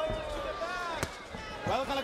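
A single sharp thud about halfway through, a boxing glove punch landing, heard under the broadcast commentary.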